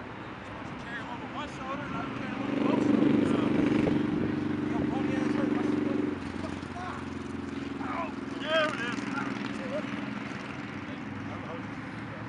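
Scattered shouts and calls from players across an open sports field. A steady engine hum is loudest from about two and a half seconds in and cuts off suddenly about six seconds in.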